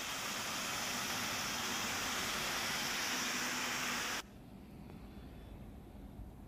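Heavy rain falling in a steady hiss on a wet highway with traffic, cutting off abruptly about four seconds in to a much quieter low background.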